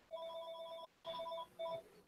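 Faint electronic ringtone: steady tones with a warbling high overtone, sounding in three bursts, a long one followed by two shorter ones.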